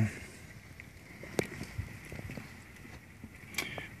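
Faint steady hiss of rain falling outside, heard through a closed window, with a sharp click about one and a half seconds in and another near the end.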